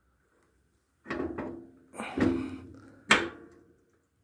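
Steel hitch parts of a bicycle trailer clunking and rattling together as the hitch bracket is seated over its pin and the locking pin goes in: two rattling clunks about one and two seconds in, then a sharp knock about three seconds in.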